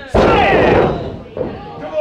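A wrestler's body slammed back-first onto the wrestling ring's canvas in a sidewalk slam: one sudden heavy thud just after the start, with a shout right after it.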